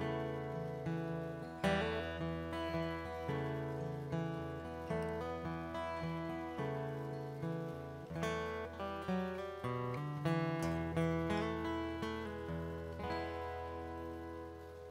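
Acoustic guitar played solo, picked notes and chords over a sustained low bass note, each attack decaying before the next. Near the end the playing stops and the last chord is left to ring and fade.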